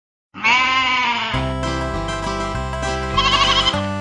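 A single sheep bleat, a wavering 'baa' a little under a second long, begins about a third of a second in after a brief silence. Bouncy country-style music with a steady beat then starts, and a wavering high sound rises over it briefly near the end.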